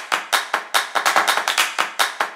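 Rapid, evenly spaced clap-like hits, about five a second, with no tune yet: the percussive opening of an electronic intro jingle.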